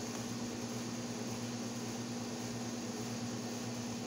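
A steady low hum under an even hiss, unchanging throughout: the background drone of a running machine.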